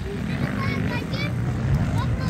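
Distant dirt bike engine running on a motocross track, a steady low drone, with voices over it.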